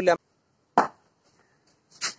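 A single sharp knock, a short hit that fades quickly, a little under a second in.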